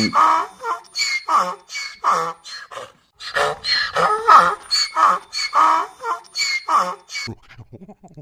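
A donkey braying in two bouts of quick, regular rasping calls, with a short break about three seconds in.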